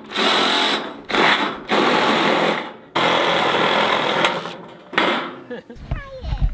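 Cordless drill-driver driving screws through corrugated metal roofing sheet into a wooden frame, in about five runs that each last from under a second to over a second, with short gaps between.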